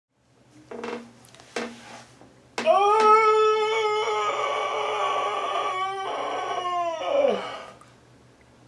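A man howling with his voice: two short cries, then one long held howl at a high, steady pitch that breaks briefly and slides down as it dies away.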